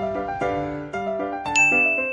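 Light background melody of plinking, bell-like notes stepping up and down. About one and a half seconds in, a bright ding sound effect rings out and hangs on.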